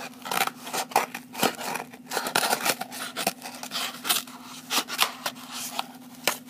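Scissors snipping through a cardboard toilet paper tube, cutting it into small hoops: a run of irregular, crisp cuts.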